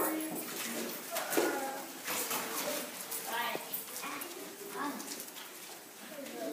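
Faint classroom chatter: young children's voices murmuring, with a few light clicks and knocks.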